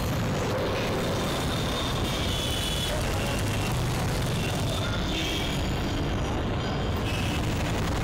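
Street traffic noise: a steady rumble of motorcycles and other light vehicles passing on the road, with faint high tones here and there.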